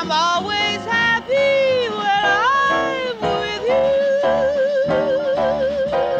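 Female jazz vocalist singing live over a piano trio, sliding and bending between notes, then holding one long note with a wide, even vibrato from a little past the middle, the closing note of the song.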